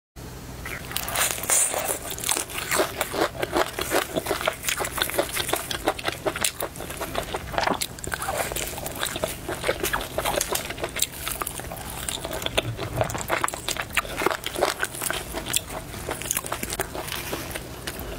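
Close-miked crunching of crispy-skinned spicy fried chicken, the crust crackling sharply and irregularly as pieces are pulled apart, bitten and chewed.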